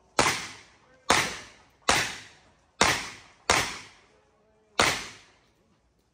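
Six handgun shots fired in an uneven string over about five seconds, each a sharp crack that trails off briefly.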